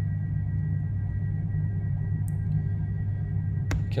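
Steady low hum with no speech, and a single sharp click near the end.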